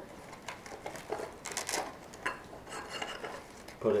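Handling noise from packing a rifle scope into its soft fabric carry case: a run of short rustles, scrapes and light knocks. The longest scrape comes about one and a half seconds in.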